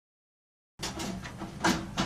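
Dead silence for most of the first second, then small clicks and knocks of hands working among the wiring inside a dryer cabinet, with one sharper click near the end.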